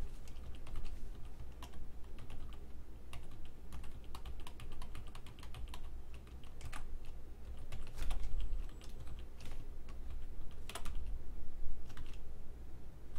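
Computer keyboard typing: quick, irregular keystrokes throughout, with a few louder key presses.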